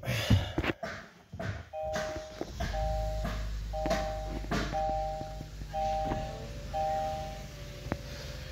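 2022 Kia K5's 1.6-litre four-cylinder engine starting about a second and a half in and settling into a steady idle, heard from inside the cabin. Over it, a dashboard warning chime sounds a two-note tone six times, about once a second. A few clicks and knocks come before the start.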